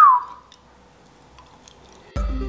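A short whistled note falling in pitch just at the start, then faint, soft clicks of someone chewing a mouthful of stuck-together pasta.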